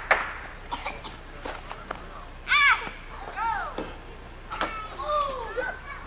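Children shouting and calling out in high voices, several separate rising-and-falling calls from about two and a half seconds in. A few short sharp knocks come in the first two seconds.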